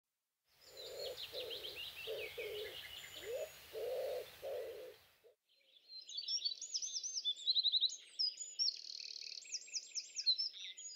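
Songbirds singing outdoors. In the first half there are descending chirps over a lower, repeated note and a faint low rumble. After a short break about five seconds in, a fuller stretch of rapid, varied song with trills follows.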